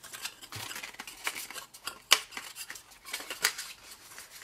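Patterned paper band being handled and wrapped around a cardstock box by hand: irregular papery rustles and scrapes with sharp clicks, the loudest about two seconds in.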